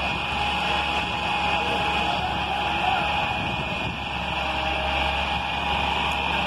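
Hitachi excavator's diesel engine running steadily, a low drone under a constant high hiss, as its boom works to lower workers from the rooftop.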